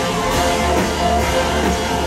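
Live rock band playing a stretch without singing: strummed acoustic and electric guitars over bass and a steady drum-kit beat, loud and full.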